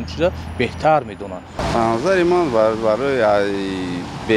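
Men's speech: one man talks, then after a cut about a second and a half in a second man talks, with a low rumble of traffic under the first voice.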